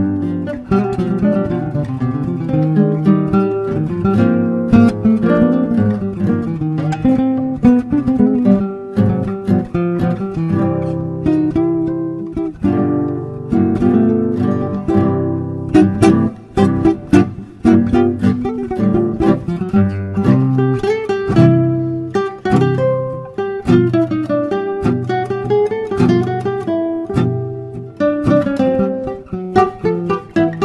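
Two nylon-string classical guitars playing a tango as a duet: plucked melody lines over bass notes and chords, with sharp accented strummed chords, several of them close together about halfway through.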